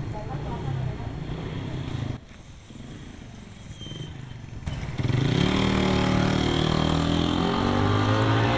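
Street noise, then about five seconds in a nearby motor vehicle engine comes in loud and runs with its pitch rising slowly, as when accelerating.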